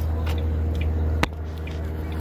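A steady low mechanical hum, with one sharp click a little past halfway, after which the hum is slightly quieter.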